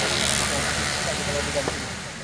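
Men's voices talking faintly over a steady rushing outdoor noise, which slowly fades toward the end.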